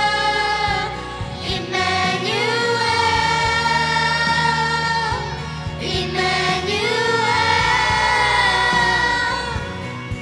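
A young girl's solo voice singing into a microphone, holding long notes with vibrato in three phrases, over a steady instrumental accompaniment.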